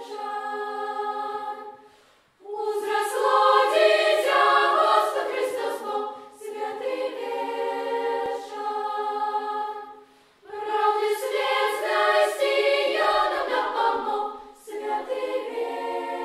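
Children's choir of girls' and boys' voices singing a cappella in phrases, with brief pauses about two and ten seconds in.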